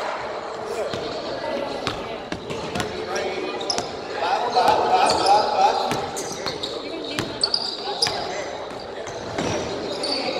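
Basketball being dribbled on a hardwood gym floor, sharp bounces echoing through a large hall, with sneakers squeaking as players run.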